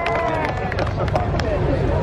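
An amplified voice over a stage PA system, with crowd murmur behind it.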